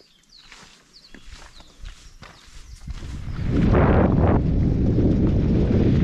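Light footsteps and a few short bird chirps, then, from about three and a half seconds in, a loud steady rumble of wind on the microphone of a moving bicycle's camera.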